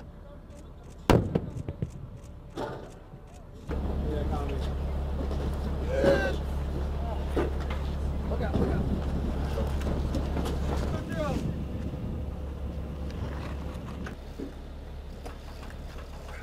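A single sharp bang about a second in and a smaller knock soon after. Then howitzer crew members shout short, indistinct calls over a steady low rumble.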